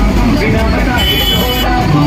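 Loud, dense street-procession din: voices and amplified sound from horn loudspeakers on a festival float, over a low rumble. A brief high-pitched steady tone sounds about a second in.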